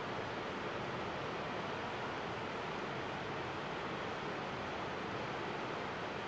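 Steady rushing of fast river water in rapids, an even hiss with no rhythm or changes.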